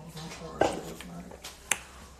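Two sharp clicks or snaps about a second apart, the first the louder.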